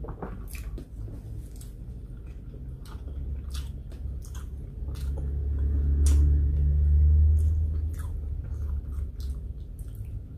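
Close-miked chewing with scattered sharp, wet mouth clicks as food is eaten by hand. A low hum swells up from about three seconds in, is loudest in the middle and fades near the end.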